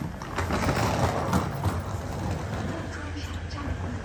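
Indistinct voices over a steady low hum, busier in the first couple of seconds and quieter after.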